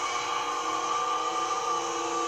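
Steady drone of several held tones over hiss from an old film's soundtrack; no speech.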